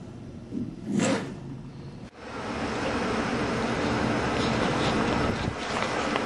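Quiet room tone with one short sound about a second in. From about two seconds in, steady outdoor background noise, an even rushing haze without distinct events.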